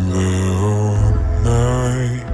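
Slowed-down pop song: a voice holding two long, drawn-out sung notes over a deep, steady bass.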